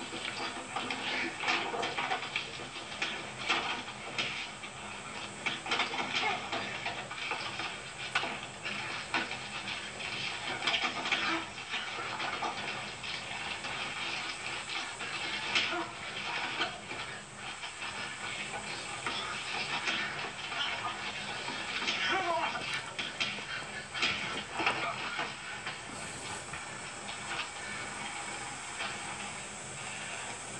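Soundtrack of an old western film playing on a television: music with some indistinct voices over constant background noise.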